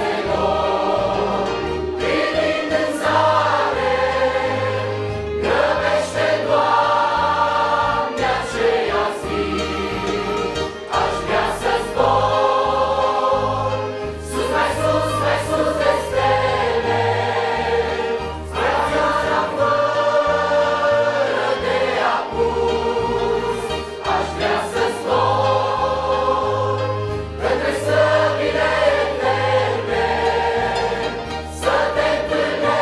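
Mixed choir of men and women singing a Romanian hymn in phrases of a few seconds each, over a low, steady accompaniment.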